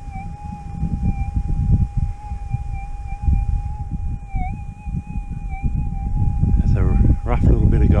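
Gold metal detector's steady threshold tone, one mid-pitched hum with slight dips in pitch, the clearest about halfway through, over a low rumble on the microphone.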